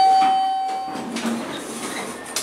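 Elevator arrival chime, a single ding that fades over about a second, followed by the car doors sliding open.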